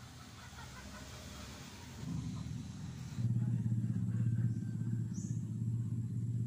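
Low, rapidly pulsing rumble of a running engine, growing louder about two seconds in and jumping up sharply a little after three seconds.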